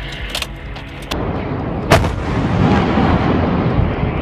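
A towed 155 mm howitzer firing: a sharp blast about two seconds in, then a long rolling rumble as the report echoes away, with lighter sharp knocks before it.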